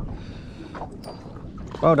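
Steady wind and water noise on an open boat, with a couple of faint clicks about a second in; a voice starts near the end.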